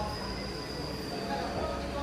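A single-car Eizan Electric Railway train pulling away from the platform: a low running rumble of wheels and motors, with a thin high whine that slowly drops in pitch throughout.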